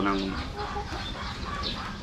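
Chickens clucking faintly in the background, a few short, scattered calls.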